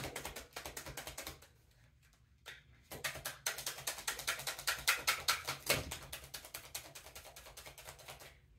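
A deck of tarot cards being shuffled by hand, the cards dropping from one hand to the other in rapid runs of soft clicks, with a short pause about a second and a half in.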